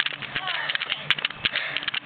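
Faint voices over a run of short clicks and knocks.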